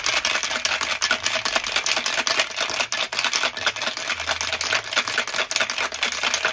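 Ice cubes rattling hard inside a stainless-steel cocktail shaker, shaken vigorously without pause to chill the drink.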